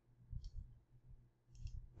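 Faint computer mouse clicks: one short click about half a second in and a quick cluster of clicks near the end, over a faint low hum.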